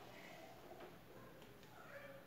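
Faint squeaking and scraping of a marker drawn along a ruler on a whiteboard, otherwise near silence.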